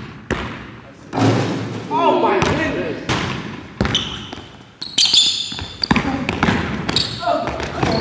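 A basketball being dribbled and bouncing on a hardwood gym floor, a run of sharp thuds echoing in the large hall, with players' voices in between.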